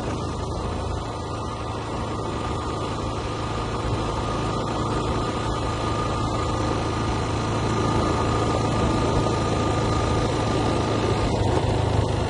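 Motorcycle engine running steadily while riding, with road and wind noise, growing gradually louder.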